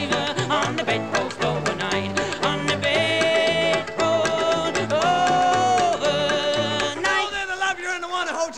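Skiffle music: a bass line stepping along under several long held notes, with no lyrics sung.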